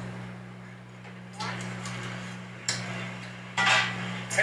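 A steady low electrical hum, with faint voices and a few sudden clattering knocks from a street-food video playing. The loudest knock comes near the end.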